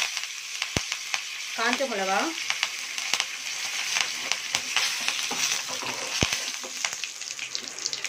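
Tempering of mustard seeds, urad dal, curry leaves and dried red chillies sizzling and crackling in hot oil in a non-stick frying pan, a steady hiss with many small pops.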